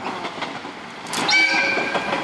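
Horn of a JR Tadami Line diesel railcar, one steady blast beginning about a second in, sounded as a greeting to the people on the river ferry.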